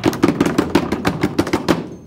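Drum roll: rapid strikes, about eight a second, that stop just before the end.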